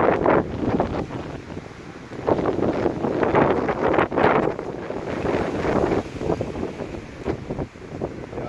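Leafy branches rustling and shaking as a goat tugs and strips leaves from them, in irregular loud bursts.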